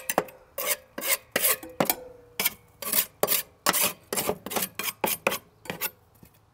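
A metal putty knife scraping caked grass and dirt off the underside of a rusty steel lawnmower deck, in quick repeated strokes of about three a second that stop just before the end.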